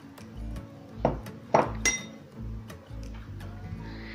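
A metal spoon clinks a few times against a glass mixing bowl as chopped coriander is scraped in, the loudest clinks between one and two seconds in, over background music with a steady low beat.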